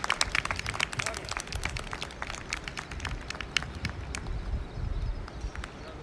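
A small, spread-out group of people clapping after the flag is unfurled. The claps thin out toward the end, over a low wind rumble on the microphone.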